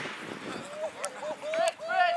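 A person on the sideline yelling a string of short high-pitched shouts that end in a longer held shout, cheering on the runner. Two short sharp sounds cut in partway through.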